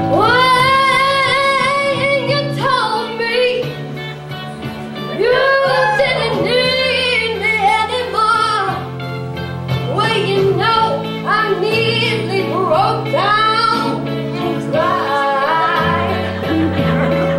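A young female voice singing into a microphone over instrumental accompaniment. It opens with one long held note of about two and a half seconds, then moves into shorter sung phrases.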